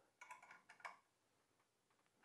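A few faint, small metallic clicks in the first second from steel nuts being threaded onto the machine-thread end of a hanger bolt by hand.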